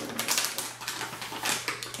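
Irregular sharp clicks and taps, several a second, of small objects being handled, over a steady low hum.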